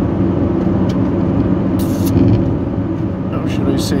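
Steady low rumble of a car's engine and tyres heard from inside the cabin while driving, with a brief hiss about two seconds in.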